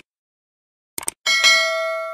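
Subscribe-animation sound effect: a quick click, then a double click about a second in. Right after it comes a bell-like notification ding that rings on in several steady high tones and slowly fades.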